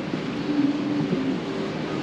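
Steady hiss and rumble of indoor background noise, such as a large building's ventilation, with a faint held hum that dips in pitch about a second in.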